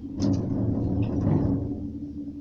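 Gondola cabin running over a lift tower's sheave wheels: two sharp clicks, then a rumbling clatter for about a second and a half, over the cabin's steady hum.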